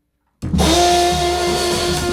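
A jazz trio of tenor saxophone, upright bass and drum kit starts playing abruptly after a brief dead silence, about half a second in. The saxophone holds one long note with a slight waver over the bass and drums.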